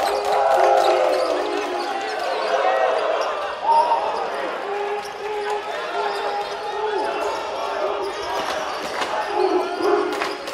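A basketball being dribbled on a hardwood gym floor, with short bounces and impacts, under the sustained voices of a crowd or cheering section chanting, echoing in a large gym.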